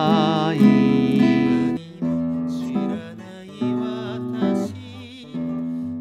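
Nylon-string classical guitar playing a picked accompaniment: bass notes under chords on the upper strings, moving from E to F#m over an E bass. A wavering melody line sounds over it in the first two seconds.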